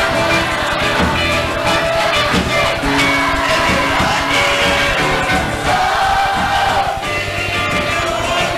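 Live samba played by a vocal group with its band, a steady beat and held notes running on.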